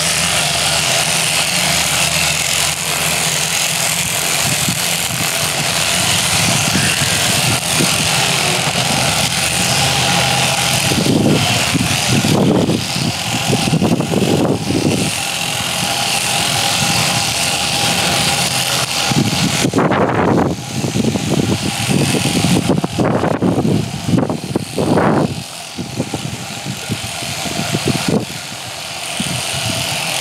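Electric sheep-shearing machine running steadily, its handpiece cutting through the fleece of a horned Jacob sheep. A few short, louder surges of noise come partway through.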